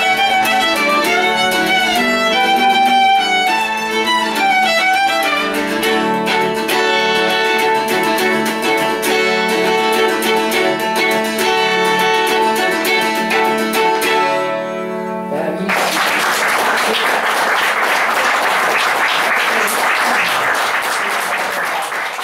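Violin and mandola duet playing an old traditional dance tune, which ends about two-thirds of the way through; audience applause follows to the end.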